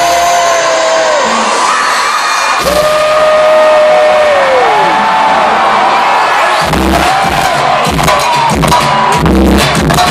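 A live band plays through a hall's PA system to a cheering crowd. Long held notes droop at their ends, then drums and bass come in with a heavy beat about seven seconds in.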